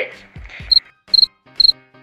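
An electronic sound effect for a loading screen: short high beeps repeating a little over twice a second, with soft low thuds between and under them.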